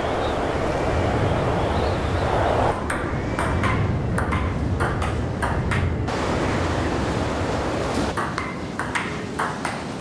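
Blizzard wind blowing steadily, with a faint whistle in the first couple of seconds. From about three seconds in, a run of short, sharp pings sounds over the wind.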